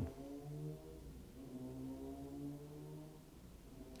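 Faint, low, sustained pitched tones, each held for about half a second to a second with slight bends in pitch.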